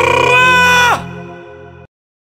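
The closing note of a Telugu devotional Ganesh song, held briefly and then sliding down in pitch about a second in. The music fades quickly after that and cuts off just before the end.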